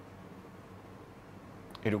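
Quiet room tone with a faint steady hum. A man's voice starts just before the end.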